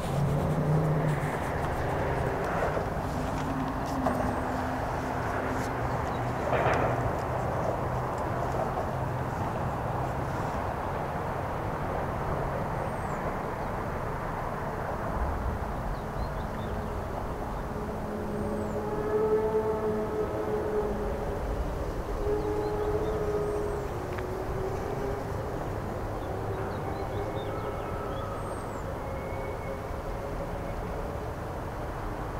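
Freight train approaching from a distance: a steady low rumble under outdoor ambience, with faint held tones about two-thirds of the way in. Short high chirps recur every few seconds.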